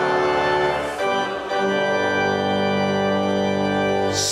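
Church organ playing sustained chords, changing chord about a second in and again about half a second later.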